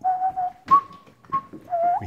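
A person whistling a few thin notes: one held note, then two short higher ones and a short rising note near the end, with a few soft clicks in between.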